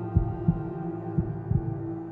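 Suspense soundtrack: a steady low drone under a heartbeat sound effect, deep double thumps about once a second.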